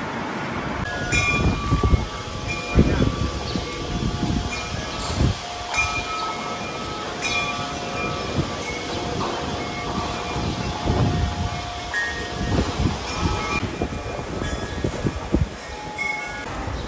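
Bell-like chiming tones at several pitches, ringing out one after another over a low rumble with irregular thuds.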